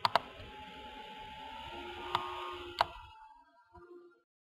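Computer mouse clicking: a quick double click at the start, then single clicks a little past two seconds and near three seconds, over a low hiss of room noise that fades out before the end.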